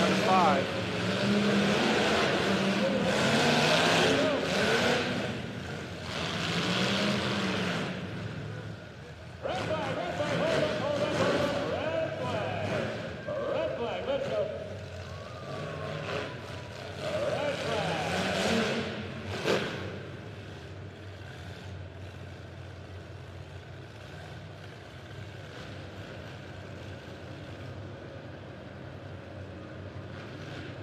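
Demolition derby car engines revving up and down hard as the cars maneuver and hit each other, with a sharp bang about two-thirds of the way in. After that the revving dies away, leaving a steadier, quieter background of idling and crowd noise.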